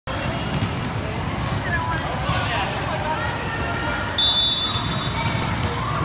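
Indoor volleyball gym din: people talking and calling out, with scattered ball bounces and thuds. A little past the middle a referee's whistle sounds steadily for about a second, signalling the serve.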